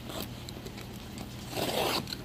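A cardboard shipping box being cut open with a box cutter: a few light ticks, then a half-second scraping rip near the end as the blade runs through the packing tape and cardboard.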